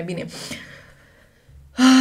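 A woman's voice: a word ends, then comes one short, breathy breath with no voice in it, fading within half a second; after a brief quiet she starts talking again near the end.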